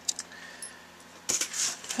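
Handling noise at an electronics bench: a few light clicks, then a brief metallic rattle and rustle about a second and a half in, as oscilloscope probe leads are handled.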